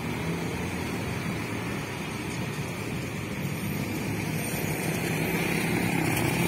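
Engine of an approaching intercity bus running over steady street traffic noise, growing gradually louder as it nears.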